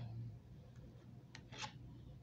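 Tarot cards being drawn and handled, faint: a light tick, then two short card sounds close together about a second and a half in.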